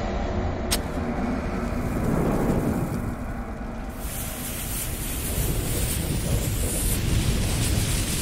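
Cinematic logo-intro sound effects: a deep, steady rumble with a sharp click about a second in, joined about halfway by a loud fire hiss as flames sweep across the logo.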